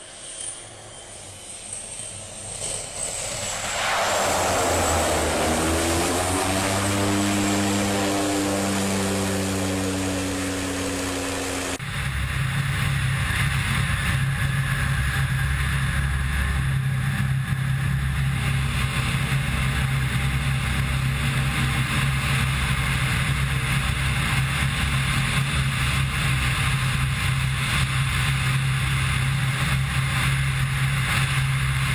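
Single-engine propeller plane approaching and passing close, its engine growing louder over the first few seconds and dropping in pitch as it goes by. About twelve seconds in the sound switches suddenly to the steady drone of the engine and propeller with wind rush, heard from a camera mounted on the aircraft in flight.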